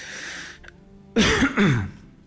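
A man clearing his throat: a hissing breath, then about a second later a loud, rough two-part throat clear.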